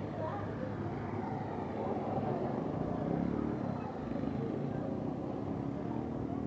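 Indistinct voices talking over a steady low engine hum.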